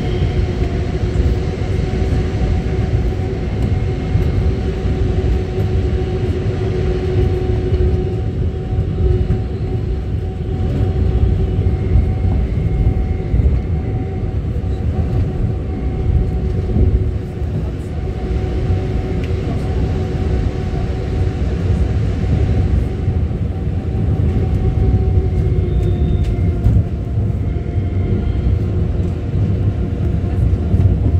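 Lille metro VAL rubber-tyred automated train running, heard from inside the car: a steady rumble of the tyres on the concrete track with a steady humming tone over it.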